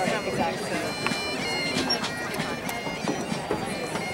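Wind instruments playing a melody in sustained notes, under the chatter of people close by.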